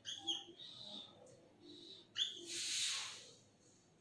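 Felt-tip marker squeaking faintly in short strokes on a whiteboard, then a louder breathy hiss about two seconds in that lasts about a second.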